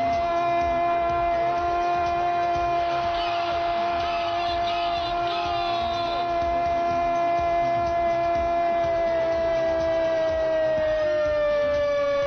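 Radio football commentator's long held goal cry, one sustained 'gooool' shout on a single pitch that sags slightly near the end.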